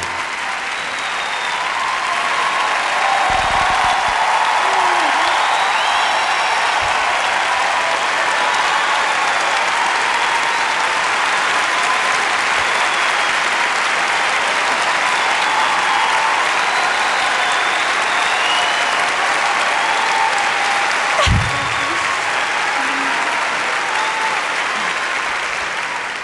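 Large theatre audience applauding steadily, a dense even clapping that dies away near the end.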